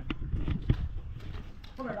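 Two short knocks about half a second apart, the second the sharper and louder, over a low steady rumble; a voice speaks briefly near the end.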